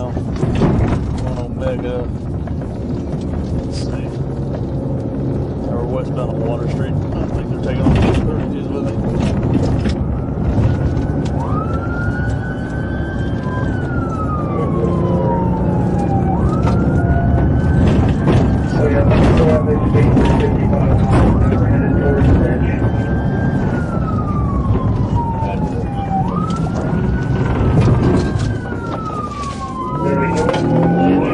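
Police car siren on a slow wail, rising quickly then falling slowly, each cycle about five seconds long, starting about a third of the way in. Underneath runs the steady noise of the pursuing patrol car's engine and road noise, with scattered clicks.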